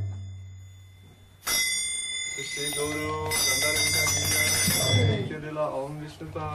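A small metal bell-like instrument struck once about one and a half seconds in, ringing on with a steady high tone for several seconds.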